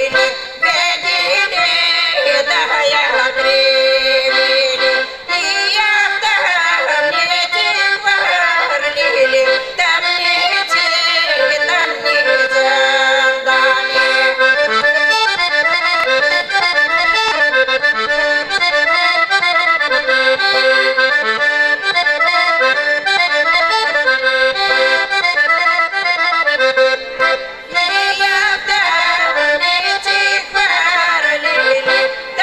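Piano accordion playing a Bulgarian folk tune.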